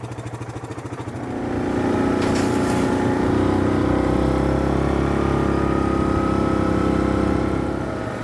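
Four-wheeler ATV engine idling, then pulling away about a second in and running steadily under throttle, easing off near the end.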